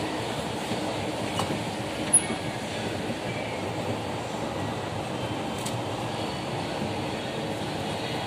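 Hitachi escalator running under a rider: a steady mechanical rumble from the moving steps, with one short sharp click about two seconds in.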